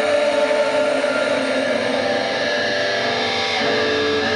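Crowd noise and held, ringing guitar tones in a concert hall between songs. Near the end, distorted electric guitars come in with the next song's riff.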